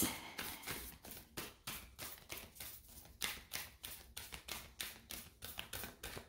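A deck of tarot cards being shuffled by hand: a quick, irregular run of soft card slaps and clicks, several a second.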